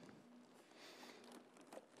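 Near silence, with faint crinkling of a plastic garbage bag as a hand mixes liquid grout inside it in a bucket.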